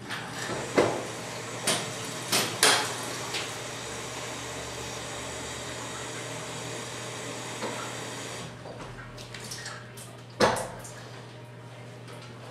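Water running steadily from a tap into a floor-finish applicator's backpack bag, shut off after about eight and a half seconds. There are a few sharp clicks in the first three seconds and a single knock near the end.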